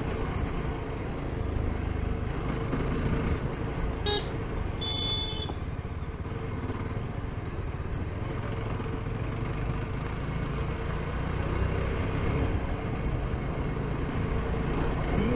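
Yezdi Scrambler's single-cylinder engine running steadily while riding, with road and wind noise on the camera microphone. A brief high-pitched beep sounds about five seconds in.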